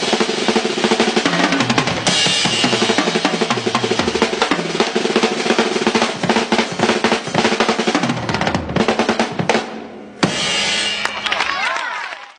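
Acoustic drum kit played fast and busy: bass drum, accented snare and hi-hat with rolls and tom fills that step down in pitch. The drumming dips briefly about ten seconds in, then comes back loud and sustained.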